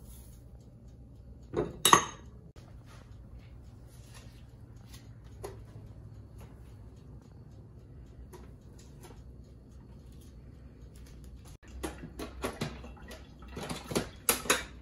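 Frozen vegetables and pieces of raw beef kidney being tipped and dropped into a plastic blender jar. There is one sharp knock of the bowl against the jar about two seconds in, then scattered light knocks, and a cluster of clatter near the end as the lid is pressed onto the jar.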